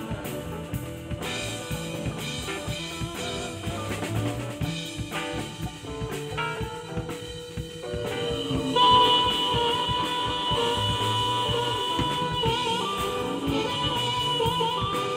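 Live band playing an instrumental break on drum kit, electric bass and electric guitar; about nine seconds in a harmonica solo comes in loud over the band with long held notes.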